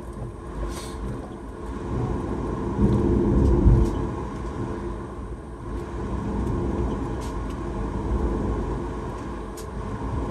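Airliner cabin noise while taxiing after landing: a steady low rumble of the jet engines with a held hum, swelling a little about three seconds in. A few faint clicks sound over it.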